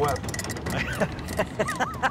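A man laughing and talking, over the steady low rumble of a boat's engine.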